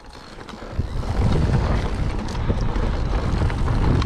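Mountain bike rolling downhill on a dirt trail, heard as a low rumble of wind buffeting the camera microphone and tyre noise, building up over the first second as the bike gathers speed, with a few small rattles.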